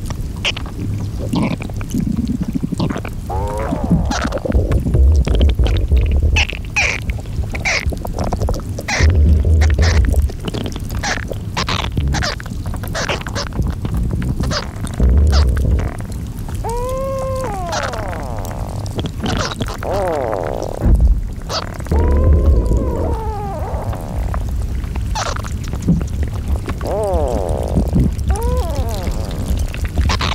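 Melting glacier ice and meltwater: gurgling and trickling water with many sharp clicks and crackles, a few low rumbles, and several squealing pitched glides that arch up and down, mostly in the second half.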